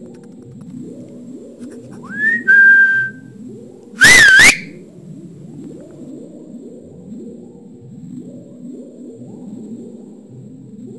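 Whistling over a low, looping background of rising tones: a whistle slides up about two seconds in and holds one note for about a second, then a short, loud wavering whistle follows about four seconds in.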